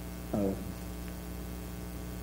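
Steady electrical hum in the microphone and sound system, with a short spoken syllable falling in pitch about half a second in.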